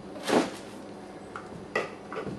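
Small empty plastic soda bottles being handled and set down on a kitchen counter: a brief plastic clatter about a quarter second in, then a light knock near the end as a bottle is put down.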